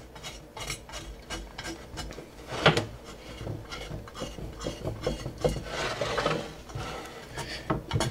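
Razor blade scraping sticky oil residue off a Pyrex glass dish: a run of short, irregular scraping strokes, with one sharper stroke a little under three seconds in.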